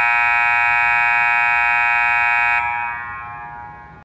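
Nevco scoreboard horn sounding one long steady blast that cuts off about two and a half seconds in, then dies away over the last second and a half.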